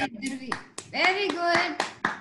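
Several uneven hand claps of applause over a video call, with voices over them about a second in.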